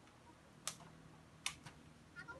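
Two sharp knocks of a small ball being kicked on a dirt yard, under a second apart, the second followed by a fainter tap.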